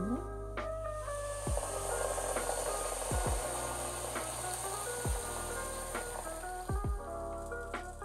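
Boiling water pouring from a kettle onto pumpkin chunks in a pot, a steady rush that starts about a second in and fades after about five seconds, under background piano music.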